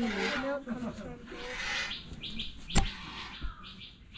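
Hand-milking a cow: a quick run of short hissing squirts of milk into a plastic bucket in the second half, with voices talking in the first half and one sharp knock.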